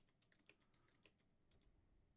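Near silence with a few very faint computer keyboard keystrokes.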